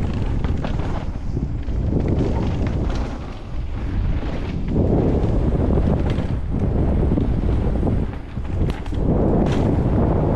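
Wind rushing over a helmet-mounted camera's microphone while a mountain bike rolls fast down a dirt trail, with tyre rumble and a few sharp clicks and rattles from the bike. The rush eases briefly twice, about a third of the way in and again near the end.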